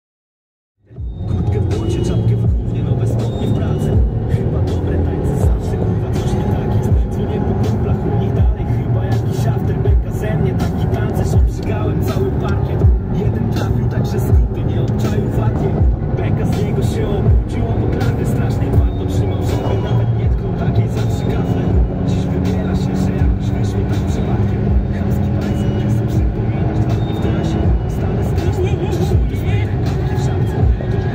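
Infiniti M37S's 3.7-litre V6, breathing through a twin K&N induction kit and remapped, running as the car drives, its pitch slowly rising and falling with the revs. Music plays along with it.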